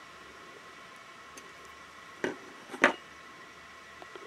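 Two short clicks about half a second apart from a steel pick working the cut end of bicycle brake cable housing, over faint room hiss.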